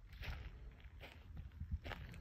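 Faint, uneven footsteps on asphalt.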